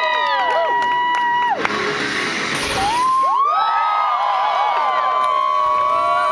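Audience cheering and whooping, with long held and arching voices, over music. A short burst of rushing noise comes about two seconds in.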